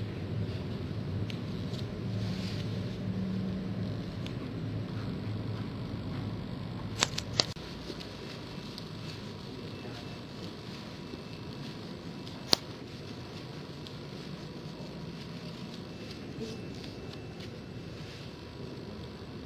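Indoor room ambience: a steady background hush with a low murmur in the first few seconds, broken by two sharp clicks about seven seconds in and a single louder click about twelve seconds in.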